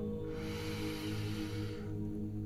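A person taking one long, deep inhale, heard as a breathy hiss of about a second and a half, over a steady, soft new-age music drone.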